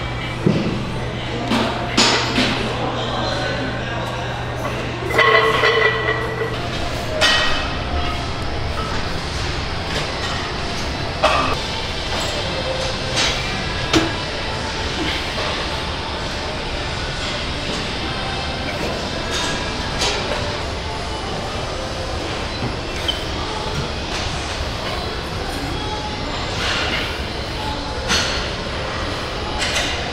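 Gym ambience: a steady rumble of background noise with scattered sharp metallic clinks and knocks from weight-training equipment. A low hum runs under it and stops about seven seconds in.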